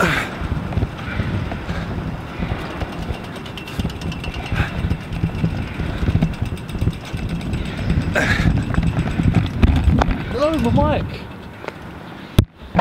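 Small plastic penny board wheels rolling over pavement, a continuous rattling rumble with wind on the microphone. A voice is heard briefly near the end.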